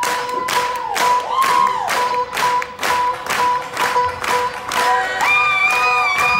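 Concert audience clapping in time, about two claps a second, with long held notes over the beat and a higher note coming in near the end.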